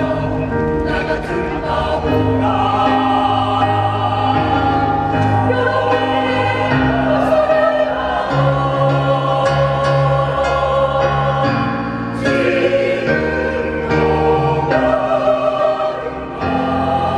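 Mixed choir of men and women singing in harmony, with long held chords that change every second or so.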